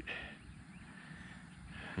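Faint outdoor background noise, a low even hiss with a few faint high chirps in the first second.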